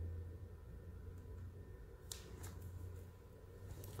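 Quiet room tone with a steady low hum that fades out after about three seconds, and a couple of faint clicks about two seconds in.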